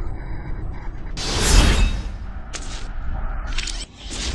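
Animated end-card sound effects: a whoosh that swells and fades about a second in, then short mechanical clicks and ratcheting near the end, over a steady low bed.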